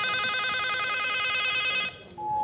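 Landline desk telephone ringing: one long, rapidly warbling electronic ring that starts suddenly and cuts off near the end.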